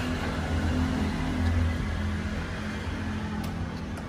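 Steady low mechanical hum with no distinct clicks or beeps.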